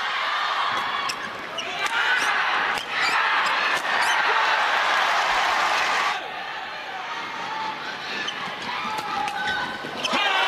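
Badminton rally: a series of sharp racket-on-shuttlecock hits and court impacts over a large arena crowd. The crowd noise is loud for a few seconds and falls away sharply about six seconds in.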